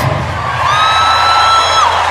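A single high-pitched whoop from a person, held for about a second and gliding down at the end, with a low steady hum underneath.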